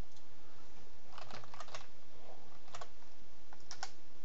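Typing on a computer keyboard: a handful of separate keystrokes in irregular groups, entering a short file name.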